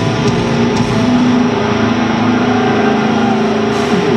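Death metal band playing live through an arena PA, heavily distorted electric guitars holding long, sustained notes. Heard from within the audience, with the room's echo.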